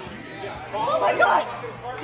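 Only speech: several people's voices talking over one another, not clearly understandable, loudest about a second in.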